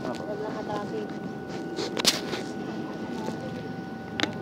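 Voices talking in the background, with a sharp click or knock about halfway through. A faint steady high hum runs underneath.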